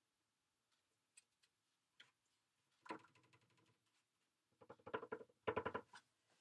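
A plastic candy mold filled with freshly poured casting mix, shaken and rattled on a wooden tabletop to level the pour and bring up trapped air bubbles: a couple of faint clicks, a short rattle about halfway, then two quicker rattling bursts near the end.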